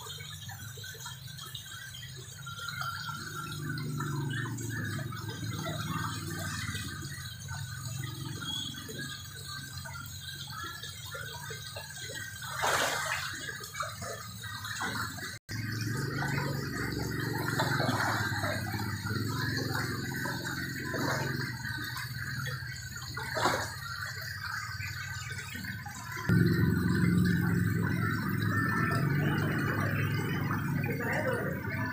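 Water pouring from a hose into a tarp-lined fish holding pool and splashing on the surface, over a low steady hum. A couple of short sharp knocks come in the middle, and the low hum gets louder near the end.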